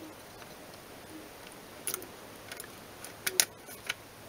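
A few sharp plastic clicks, the loudest cluster near the end: a Nook HD tablet's plastic back cover snapping into its clips as it is pressed onto the frame.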